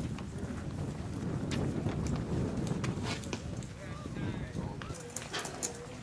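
Indistinct background voices from players and onlookers around a baseball field, with a few short pitched calls about four and five seconds in. Many scattered sharp clicks run through it.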